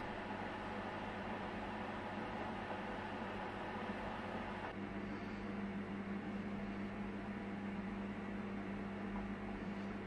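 A steady low electrical or mechanical hum over a faint hiss; the hum grows a little stronger a little before halfway through. The pouring of the melted wax is not heard.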